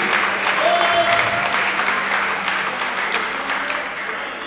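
Audience applauding at the end of a live band's song, with one voice calling out about half a second in. The applause slowly fades out.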